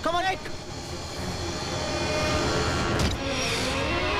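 A boy's brief strained cry, then a steady sustained film-score tone, and a single sharp thud about three seconds in: the boy kicking the ball.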